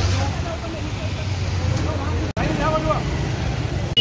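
Street noise: a steady low engine rumble of road traffic, with people's voices calling out now and then. The sound cuts out abruptly for an instant a little past two seconds in.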